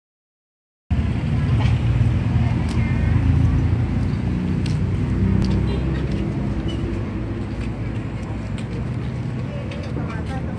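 Street ambience: a low rumble of motor traffic, heaviest in the first few seconds, with scattered voices of people around.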